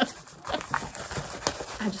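Light, irregular knocks and taps as craft-kit items and a rolled canvas tube are handled on a tabletop, about half a dozen in a second and a half.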